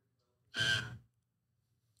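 One short breath from a person, about half a second in and lasting about half a second, in an otherwise nearly silent gap.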